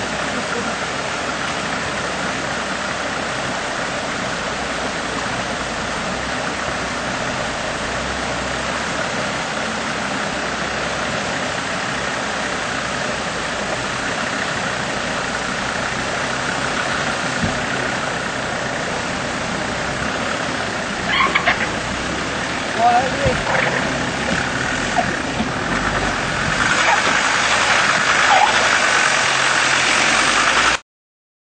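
Land Rover Discovery engine running steadily as the vehicle crawls through a creek, with a constant rush of water around the wheels. A few brief sharper sounds come a little past two-thirds of the way in, and the sound grows louder over the last few seconds.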